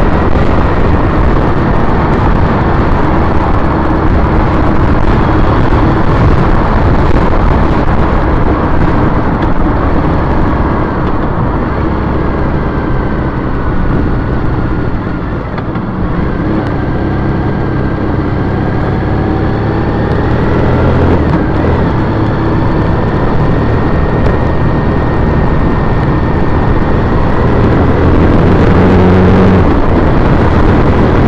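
A 2010 Triumph Bonneville T100's parallel-twin engine running while riding in traffic, under a steady rush of road noise. It eases off about halfway through, then builds again toward the end.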